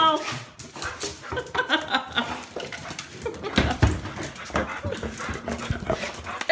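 A dog whimpering and whining, with low voices and a few thumps about three and a half seconds in.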